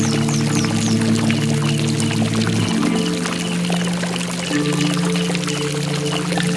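Slow ambient instrumental music with held low chords that shift a little under halfway through and again later, over a steady rush of running water. High, quick repeated chirps sound in the first second, with fainter chirping through the rest.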